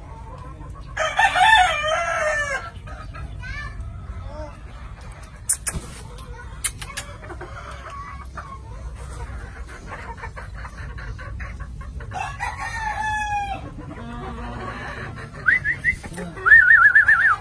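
Gamefowl rooster crowing twice, once about a second in and again near the end with a long falling finish. Between the crows come short clicks of hens pecking grain off concrete and some clucking.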